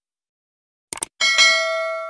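Sound effects of a subscribe-button animation: a quick double mouse click about a second in, followed by a bright notification-bell chime, struck twice in quick succession, that rings on and slowly fades.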